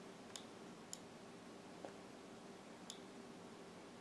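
A few faint computer mouse clicks, about four spread over the seconds, against near-silent room tone.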